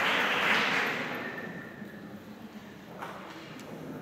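Audience applause dying away over the first second or so, then a hushed hall with a single short knock about three seconds in.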